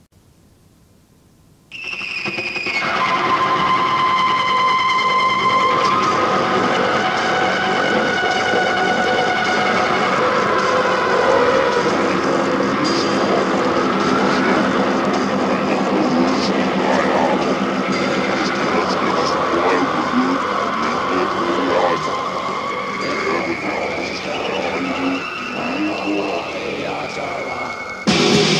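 After a short stretch of faint tape hiss, a loud, sustained, wailing electric guitar feedback drone starts about two seconds in. It holds steady pitches that bend slowly, on a live heavy metal cassette recording.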